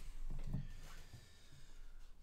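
Quiet small-room tone with a man's faint, wordless vocal sound about half a second in.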